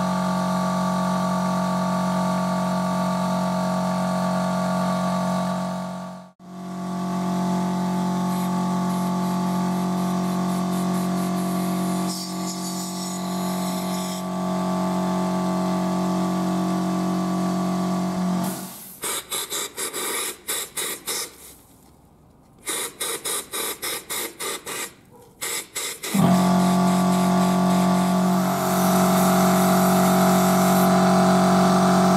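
Air compressor running steadily while a spark plug is blasted clean in a hand-held abrasive spark-plug cleaner. From about 18 to 26 seconds in the sound breaks into a rapid string of short blasts, roughly three or four a second, with a brief pause in the middle, before the steady running resumes.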